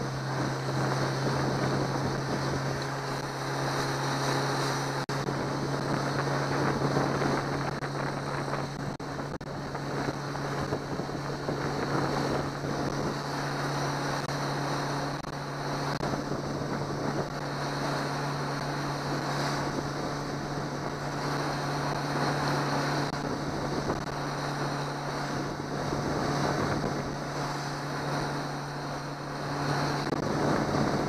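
Outboard motor of a small open boat running steadily at cruising speed, a constant low hum under wind buffeting the microphone and water rushing past the hull.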